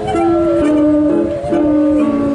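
Musical saws bowed together playing a tune: a high melody with wide vibrato over steadier lower notes that change every half second or so.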